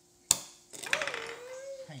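A single sharp click of a small die-cast metal toy engine against a wooden tabletop, followed by a child's long wordless vocal sound held at one wavering pitch.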